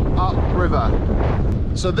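Wind buffeting the microphone on a small open boat: a loud, steady low rumble, with snatches of a man's voice over it.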